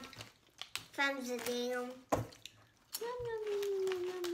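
Wordless voice sounds: a short voiced sound about a second in, then near the end a long hummed 'mmm' that slowly falls in pitch. A few sharp clicks come in between.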